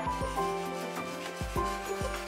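Hand file rubbing along the edge of a wooden bow blank in repeated strokes, over background music with held notes.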